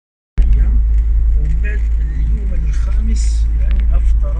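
A distant FM broadcast (Batna FM) received by sporadic-E skip on a Blaupunkt Daytona MP53 car radio: a voice speaking in Arabic through the car speaker, starting about a third of a second in, over a steady low rumble.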